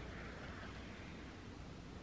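Very faint rustle of waxed thread being drawn up through wool fabric, under a steady low hiss.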